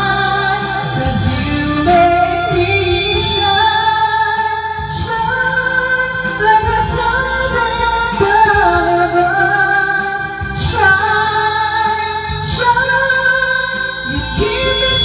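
A woman singing a slow pop song with band accompaniment, her voice holding and gliding between long sustained notes.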